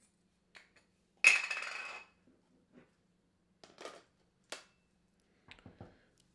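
Camera gear being handled as a lens is fitted to a camera body. About a second in there is a sharp clink that rings for most of a second, followed by several lighter clicks and knocks.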